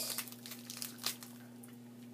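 Plastic snack-bar wrapper crinkling in a few short crackles during the first second or so, over a faint steady low hum.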